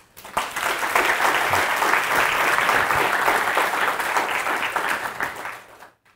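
Audience applauding at the end of a talk. It swells in within the first second, holds steady, and dies away near the end.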